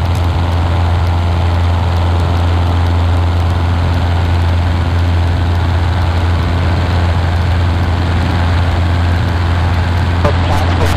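Cessna 150's four-cylinder Continental O-200 engine and propeller droning steadily in flight, heard from inside the small cabin, with a strong low hum that holds one even pitch throughout.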